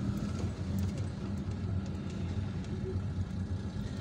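A car engine running steadily at low speed, heard from inside the car as it moves slowly, with a steady low hum.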